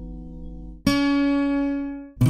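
Acoustic guitar playing a song intro: a ringing chord fades out, then a new chord is struck a little under a second in and left to ring.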